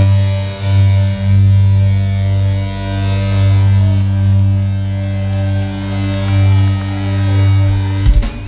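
Doom metal band playing live: distorted guitars holding long, sustained low chords with a heavy bass drone.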